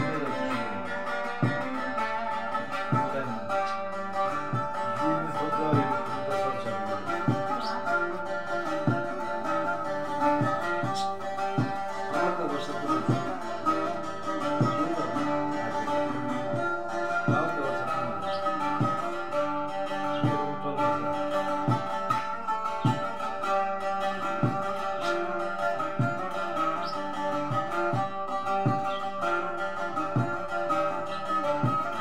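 A bağlama (long-necked Turkish saz) played with a plectrum in an instrumental passage: quick strummed and picked strokes over steadily ringing drone strings.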